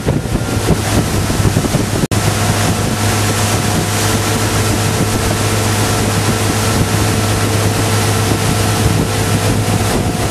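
Motorboat engine running at a steady pitch under heavy wind buffeting on the microphone and rushing water, with a momentary break in the sound about two seconds in.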